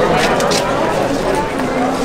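Crowd of people talking at once, many voices overlapping into a steady babble, with a few short sharp sounds within the first half-second.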